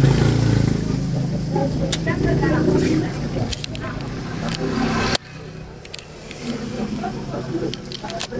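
Indistinct background voices over a low, steady engine hum, such as a passing vehicle. The sound cuts off abruptly about five seconds in, leaving quieter room noise with faint voices.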